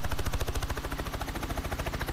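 Helicopter rotor heard from on board: a steady, rapid, even beat of blade pulses with the engine and transmission running underneath.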